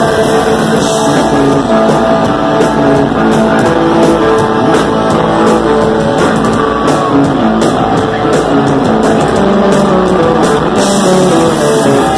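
Punk rock band playing live, loud: electric guitars, bass guitar and drums through the PA, heard from the audience. An instrumental stretch of the song with no singing.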